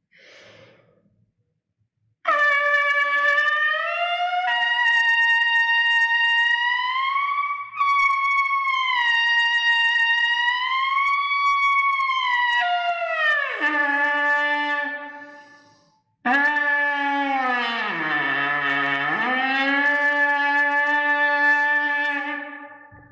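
A trumpet leadpipe buzz, played with the main tuning slide removed: two long held tones. The first starts high, near the top partial being pushed for, and wavers up and down before sliding down and fading. The second starts lower, bends down about an octave and back up, and holds.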